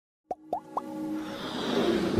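Logo-intro sound effects: three quick pops that glide upward in pitch, about a quarter second apart, followed by sustained music swelling up in a riser.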